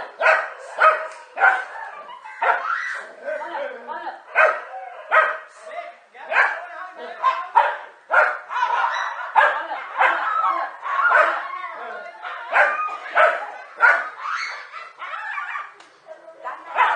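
Dogs barking repeatedly, in sharp barks coming about once or twice a second, as they attack a snake, with people's voices underneath.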